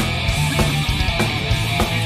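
Heavy metal band playing live at full volume: distorted electric guitar, bass and drums, with steady drum hits.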